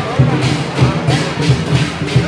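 Percussion music with drums beating a steady rhythm of about four strokes a second.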